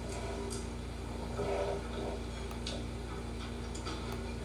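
Steady low background hum with a few soft, irregular clicks of a metal fork against a plate.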